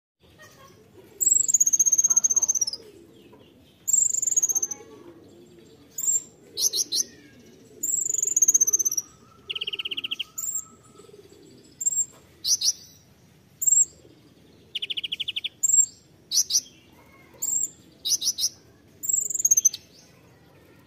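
Male Van Hasselt's sunbird (kolibri ninja) singing in loud repeated phrases. It gives thin, high descending whistles about a second and a half long, short sharp notes in quick clusters, and twice a brief rapid buzzy trill.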